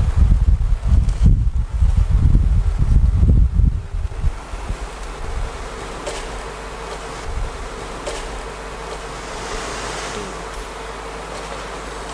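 Low rumbling, rubbing noise for about the first four seconds, then a steady hiss with a faint buzzing hum.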